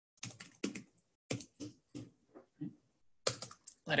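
Typing on a computer keyboard: about a dozen keystrokes in short, irregular runs.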